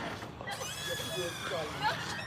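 Faint, indistinct voices in the background, some of them high-pitched.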